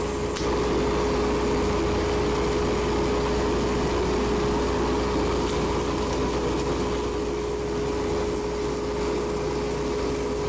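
Wood lathe running steadily with a constant humming tone while sandpaper is held against the spinning pen blank, a light, even rubbing hiss.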